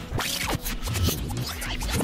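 Record-scratch sound effect: a quick run of scratches sweeping up and down in pitch, over background music.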